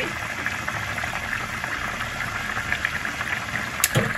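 Curry gravy bubbling and simmering in a pan, a steady crackling bubble. A single sharp click comes just before the end.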